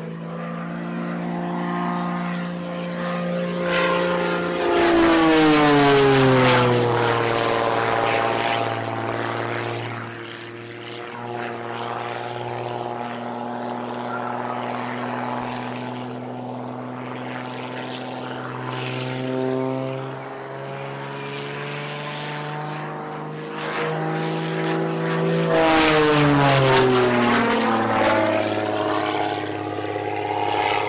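Extra 330 aerobatic plane's six-cylinder piston engine and propeller droning through aerobatic manoeuvres. It grows much louder twice, about 5 s and 26 s in, each time with a sharp fall in pitch.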